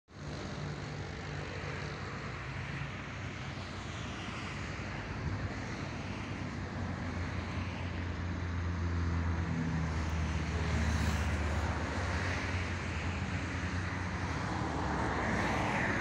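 Road traffic on a highway: a steady low engine hum with tyre noise, slowly growing louder, its pitch shifting about two-thirds of the way through as vehicles come and go.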